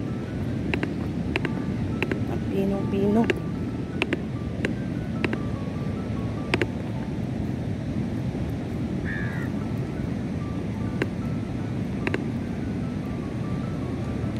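Steady wind and surf noise on a beach, with wind buffeting the microphone, under faint music that has a regular beat a little under twice a second.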